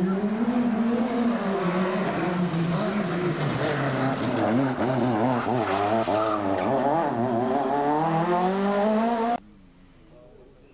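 Two-litre kit-car rally car's engine at high revs, its pitch wavering rapidly up and down through a tight turn and then climbing as it accelerates away. The sound cuts off suddenly near the end.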